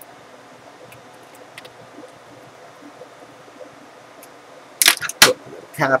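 Faint small ticks of handling, then near the end two or three sharp plastic clicks as the rubber screw covers are pressed into the laptop's screen bezel over its screws.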